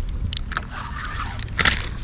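Knocks and scrapes of a fishing rod and gear being handled close to the microphone while playing a hooked fish from a float tube. There are two sharp clicks, one near the start and one near the end, over a low rumble of handling.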